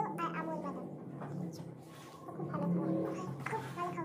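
A child making wordless vocal sounds over a low, steady hum.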